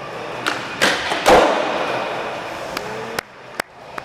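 Skateboard rolling on concrete, with a couple of knocks and then a loud landing thud about a second and a half in, as a skater comes down a stair set. The wheels roll on after the landing, and a few sharp clacks follow near the end.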